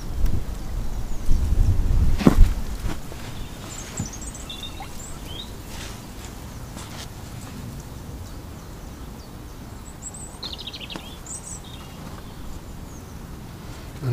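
Outdoor ambience: a low rumble with a single sharp click in the first couple of seconds, then steady faint background noise with a few short, high bird chirps around the middle and again later.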